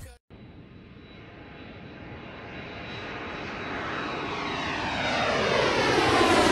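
Jet aircraft flyby: a rushing noise that grows steadily louder, with sweeping, phasing tones as it closes in.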